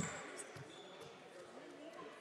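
A basketball is dribbled on a sports-hall wooden floor. There is a sharp bounce right at the start, then fainter bounces about every half second, with reverberation from the hall.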